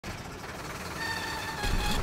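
Straight truck running, heard from inside the cab as a steady rumble and hiss. A steady high tone joins about halfway through, and the low rumble grows louder near the end.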